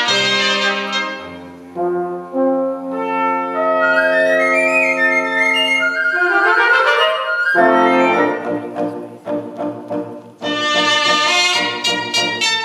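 A cobla playing a sardana live: trumpets, fiscorns and the double-reed tenoras and tibles over a double bass. Held chords give way to a rising run a little past the middle, and then the full band comes in with a rhythmic passage.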